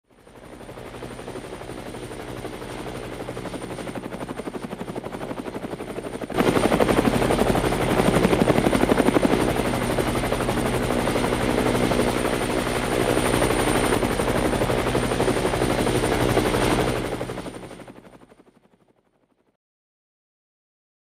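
Helicopter rotor chopping in a fast, even pulse over a steady engine hum and a thin high whine. It fades in, gets suddenly louder about six seconds in, then fades away to silence near the end.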